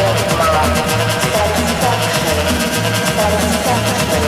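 Guaracha electronic dance music: a pulsing bass line under fast ticking percussion and a synth melody, at a steady loud level.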